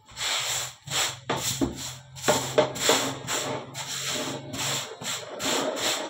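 Hands rubbing and rolling dough on a floured worktable in quick, irregular strokes. A low steady hum runs under them until nearly five seconds in.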